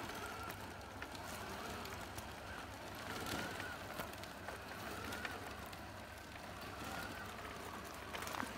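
Electric radio-controlled scale semi-trucks driving in tow, one pulling the other by a strap: a faint motor whine that rises and falls, over the steady noise of small tyres rolling on rough pavement.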